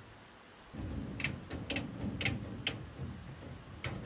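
Fine wire mesh (hardware cloth) being unrolled and handled, with a rough scraping rustle and about five sharp metallic clicks and snaps as the tightly wound roll springs and shifts.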